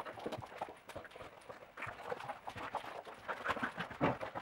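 A border collie's paws and claws hitting the floor in quick, irregular taps and scrabbles as it runs and turns chasing a flirt-pole toy.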